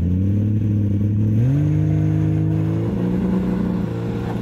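Classic sports car's engine running. It cuts in abruptly, rises in pitch a little over a second in as it is revved, then holds a steady higher note.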